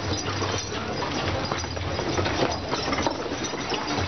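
Horse-drawn carts moving through a crowded street: irregular hoof clops and the knocking and rattling of carts and harness over a low rumble.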